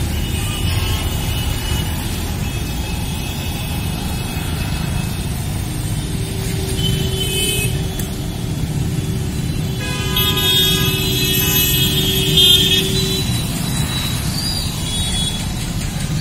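Road traffic: a steady rumble of passing vehicles, with car horns sounding in the middle, one long horn note held for several seconds.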